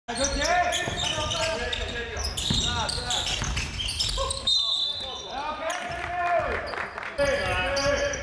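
Live basketball game in a gym: a basketball being dribbled on the hardwood court, with sneakers squeaking on the floor and players calling out to one another.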